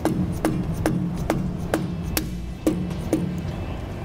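Mallet tapping a metal grease cap into a trailer wheel hub: a steady series of light knocks, about two a second, each with a brief low ring. Background music plays underneath.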